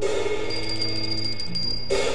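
Free jazz quartet of alto saxophone, trombone, double bass and drums playing a slow ballad: held notes from the horns over the bass, with a cymbal struck at the start and again near the end.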